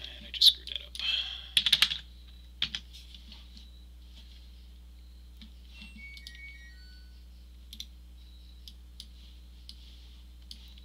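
Clicking and tapping of a computer mouse and keyboard during CAD work. It is busiest and loudest in the first two or three seconds, then thins to sparse light clicks over a low steady hum.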